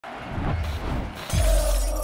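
Intro sound effect: a hiss of static-like noise with low thumps, then a sudden deep boom and a glass-shatter crash about one and a quarter seconds in.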